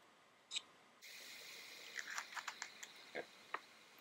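Faint light clicks and taps, a quick run of about eight spread over a second and a half, over a low steady hiss that comes in about a second in.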